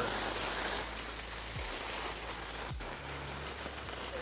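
Steady hiss of skis sliding and carving on packed snow, with a brief break about three seconds in.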